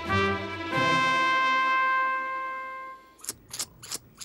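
Brass music in the cartoon score: a few short notes, then one long held note that fades and stops about three seconds in, followed by a few short sharp clicks near the end.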